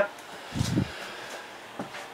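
A brief low thud about half a second in, then a faint click near the end, over quiet room tone.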